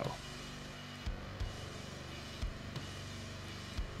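Soft background music: sustained low tones with a light, irregular kick-drum beat.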